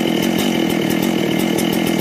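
A chainsaw engine running steadily at a constant speed.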